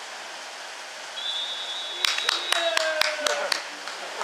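Open-air sound at a football match: a steady noise haze, then a high, steady whistle tone about a second in that lasts over a second. It is followed by a quick run of sharp claps, about four a second, mixed with players' shouts.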